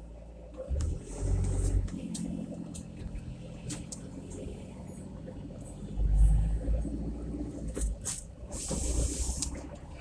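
Car driving slowly, heard from inside the cabin: low engine and tyre rumble, swelling about a second in and again around six seconds, with a few light knocks and a short hiss near the end.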